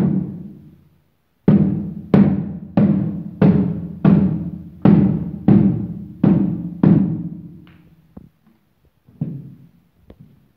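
Rubber mallet striking the face of a slatted MDF wall panel, each blow a booming knock that rings out in the board, driving the screw tips behind it into the wall to mark the fixing points. One blow at the start, then after a short pause eight more at about one and a half a second, and a lighter knock near the end.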